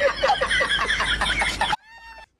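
A man's high-pitched cackling laugh, a fast run of short clucking bursts at about eight to ten a second, that cuts off suddenly shortly before the end.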